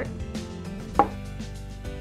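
A bowl knocking down once on a tabletop about a second in, a sharp hit with a short ring, amid a few light handling clicks.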